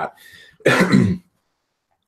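A man clears his throat once in a short, rough burst.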